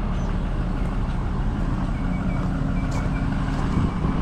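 A motor vehicle's engine idling as a steady low rumble. About halfway through a faint steady hum joins it and drops out shortly before the end.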